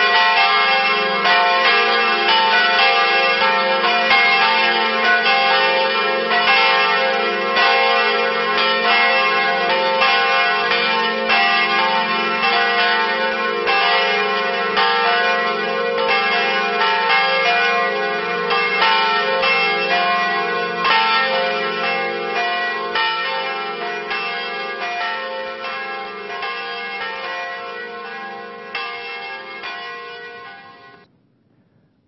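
Church bells ringing a peal of several pitches, with strikes following one another less than a second apart. The ringing fades gradually toward the end.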